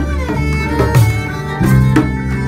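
Live acoustic world-music band: a violin plays the melody over sustained electric bass notes and plucked kora, with a few sharp hand-percussion strokes.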